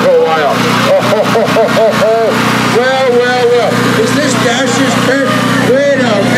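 Steady low engine hum from a passing parade float, with many voices in the crowd calling out over it in short rising and falling shouts.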